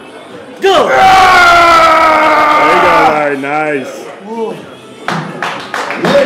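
A voice holds one long, loud cry for about two and a half seconds, falling slightly, then wavers and breaks off, over background music.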